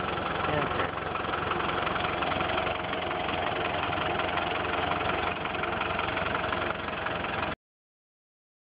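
Land Rover engine running steadily in reverse while its wheels turn on snow, with a steady whine over a low rumble. It cuts off abruptly near the end.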